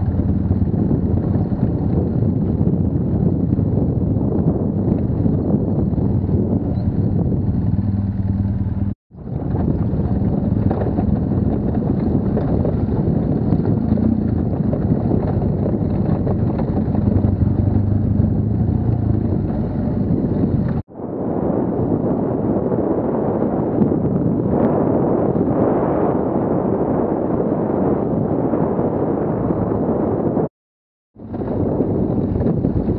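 BMW HP2 Enduro's air/oil-cooled boxer-twin engine running at a steady, low pace on a dirt trail, with rushing noise over the microphone. The sound cuts out abruptly about nine seconds in and again about twenty-one seconds in. After the second break the engine note is less distinct under more rushing noise.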